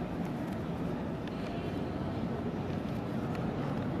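Steady low rumbling background noise with a few faint clicks, and no speech.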